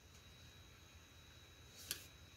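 Near silence: faint room tone with a thin steady high whine and one brief soft click near the end.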